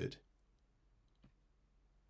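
A single computer mouse click about a second in, pasting an event ID into a software field. Otherwise the room is near silent.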